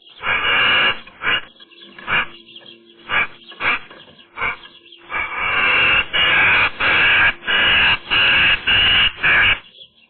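Eurasian magpies making harsh, rasping calls close to the microphone. There are a few scattered calls at first, then a run of about eight rapid calls from about five seconds in.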